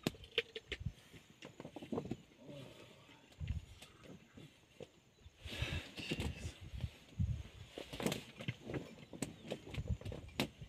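Male lions licking at close range: irregular wet clicks and soft low thumps, with a brief rustling hiss about halfway through.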